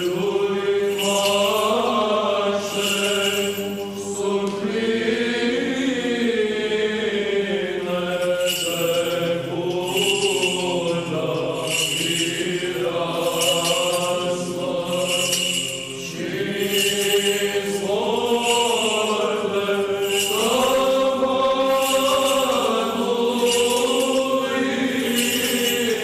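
Orthodox liturgical chant sung by several voices, a melody moving over a steadily held low note.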